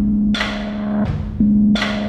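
Music: slow, heavy drum hits over a held low note.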